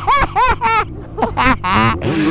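A person laughing in quick repeated bursts, over the low hum of a motorcycle riding along.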